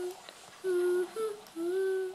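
A child humming a slow tune in held notes, each lasting about half a second with short breaks between them, the pitch stepping up and down a little.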